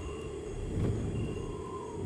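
A low, uneven rumble that swells and fades, with a few faint, thin high tones drifting above it.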